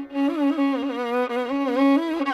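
Carnatic violin playing a continuous melodic phrase, its pitch sliding and oscillating in gamaka ornaments.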